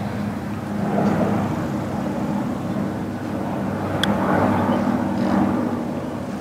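A putter strikes a golf ball once: a single sharp click about four seconds in. Under it runs a steady low engine-like drone.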